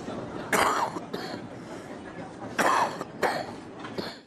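Audio of footage from inside an airliner cabin during severe turbulence: a steady rushing cabin noise with four sudden loud bursts, likely coughs or cries.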